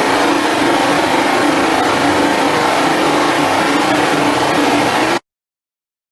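Loud, steady engine drone with a low hum, cutting off abruptly about five seconds in.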